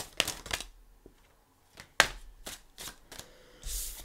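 Tarot cards being drawn from a deck and laid on a table: a few sharp flicks and snaps of card stock, the loudest a single snap about two seconds in, then a brief rustle near the end.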